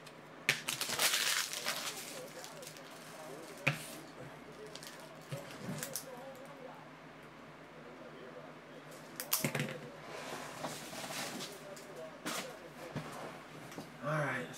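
Foil trading-card pack wrappers crinkling and cards being handled on a tabletop, in several short rustling bursts, with a sharp tap about four seconds in.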